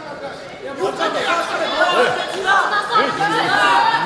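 Chatter of many voices talking over one another: spectators in a sports hall.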